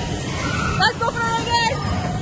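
Dodgem (bumper car) ride: a steady low rumble of the cars running on the rink floor, with excited voices calling out over it from about a second in.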